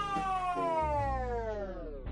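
A woman's long, drawn-out wailing cry that slides steadily down in pitch, growing lower and duller as it goes, like a voice being slowed down.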